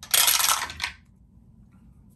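A handful of dice dropped into a clear acrylic dice tower, rattling down inside it and clattering into its tray in a burst of under a second near the start.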